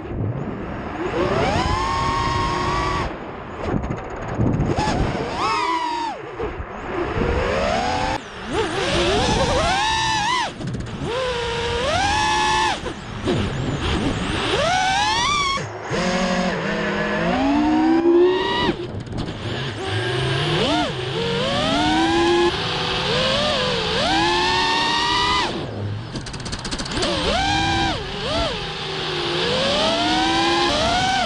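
5-inch FPV racing quadcopter's brushless motors (2306, 2450kv) and tri-blade props whining, the pitch sweeping up and down every second or two as the throttle is punched and eased through flips and rolls. The sound cuts out for a moment about halfway through.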